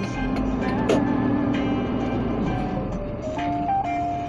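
Music playing from a radio, with a steady low rumble underneath from the diesel engine of a DAF LF 45.250 flatbed truck pulling past close by. The rumble fades about three seconds in.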